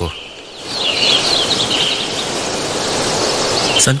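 Outdoor nature ambience: a steady noisy background with birds chirping, most clearly from about a second in.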